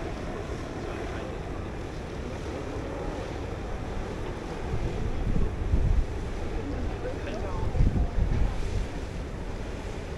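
Wind buffeting the microphone over a steady wash of choppy water, with two stronger gusts in the second half.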